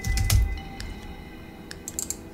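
Computer keyboard keys being typed: a quick cluster of keystrokes at the start, then a few scattered light clicks. Faint background music with held tones runs underneath.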